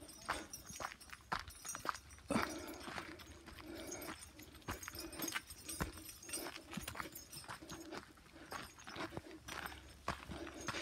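Footsteps of several people walking on a dirt and gravel forest trail, an uneven run of soft scuffs and crunches, one or two a second.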